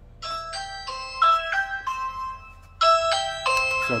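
Ring doorbell chime playing its default ring tone: a short tune of electronic bell notes that starts a moment in and plays again about halfway through, as the doorbell button is pressed.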